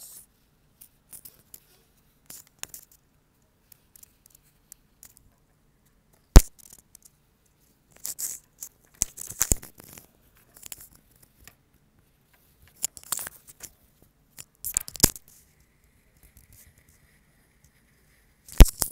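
Oil pastel scratching across a paper card in short bursts as small swirls are drawn, with one sharp tap about six seconds in.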